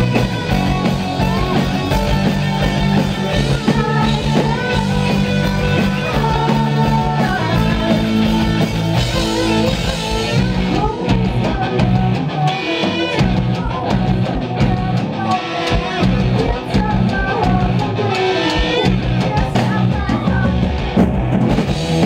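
Rock band playing live: drum kit, electric guitar and bass, with a sung lead vocal.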